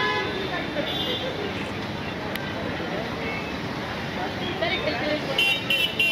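Busy street traffic noise under indistinct crowd chatter, with short vehicle horn toots near the end.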